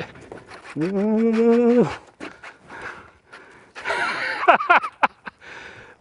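A man's voice in one long, held vocal sound, then hard, breathy exhalations and short strained sounds as he pulls against a big fish running on a bent rod.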